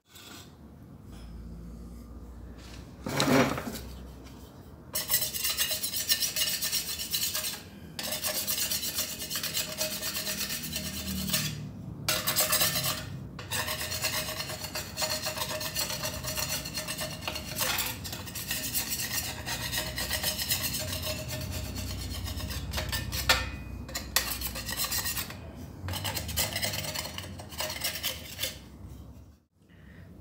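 Chemical paint remover fizzing and crackling on a bike frame and chrome handlebar as the softened paint blisters and lifts, a dense crackling hiss that cuts out abruptly several times.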